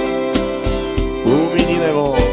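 Live vaquejada band playing an instrumental passage: acoustic guitar and accordion holding chords over a steady low drum beat about three times a second. A singer's voice comes in about halfway through.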